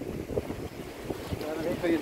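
Wind buffeting the phone's microphone in an irregular low rumble, over sea surf washing against the rocks. A man's voice starts up near the end.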